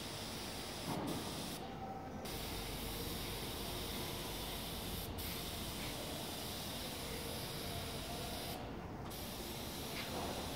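Compressed-air paint spray gun hissing steadily as paint is sprayed onto a panel, the hiss dropping out briefly twice, about two seconds in and near the end.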